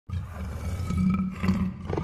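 A big cat's low, rumbling growl, used as a sound effect, starting suddenly and pulsing unevenly.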